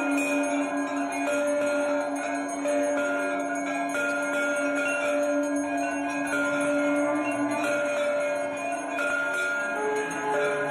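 Temple bells rung continuously during an aarti, several bells clanging together at different pitches over a sustained low ringing tone.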